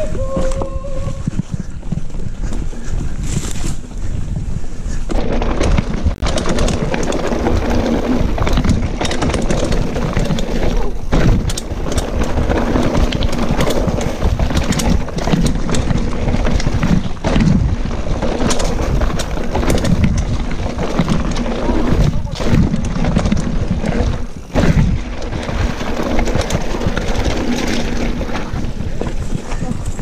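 Mountain bike descending a rough, rocky trail, heard through a handlebar-mounted camera: a constant rumble of the tyres with rapid rattling and knocking of the bike over rocks and roots, and wind rushing on the microphone. It gets louder and busier about five seconds in, as the speed picks up.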